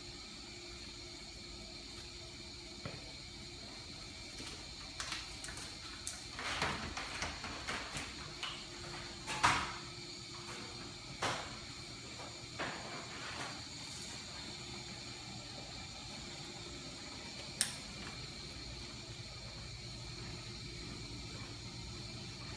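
Cables being uncoiled and handled over a steady hum and high whine of room equipment, with scattered short knocks and rustles, then one sharp click a few seconds before the end.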